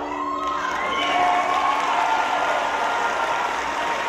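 Audience applauding and cheering, with a few whoops rising above the clapping, as the song's last note dies away at the start.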